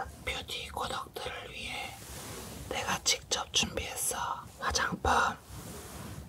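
A person whispering in Korean close to a microphone, in short phrases with brief pauses between them.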